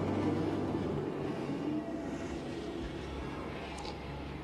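Low, rumbling drone of a horror trailer's soundtrack, slowly fading.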